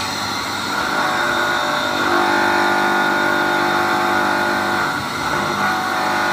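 Three-horsepower electric motor running off an inverter, a steady hum of several tones. About two seconds in the hum grows louder and fuller as a load is put on its shaft, then eases a little near the end.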